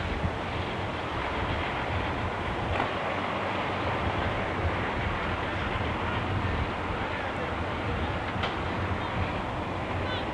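Ex-military cargo truck driving past, its engine giving a steady low rumble.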